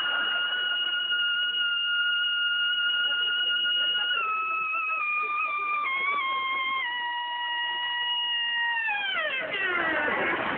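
A trumpet holding one long high note that sags lower in a few small steps, then falls away in a steep downward slide near the end.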